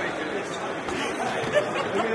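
Crowd chatter: many people talking at once in a large, echoing hall, with one short knock near the end.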